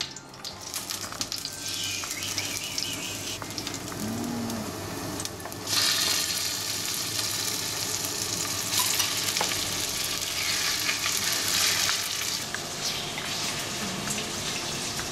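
Garlic and ginger sizzling in hot oil in a pot. About six seconds in, chunks of pork belly are tipped in and the sizzling suddenly gets louder and stays loud.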